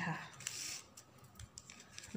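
Ribbon rustling briefly as it is pushed and drawn through a loop of the woven ribbon ball, a short hissy swish about half a second in.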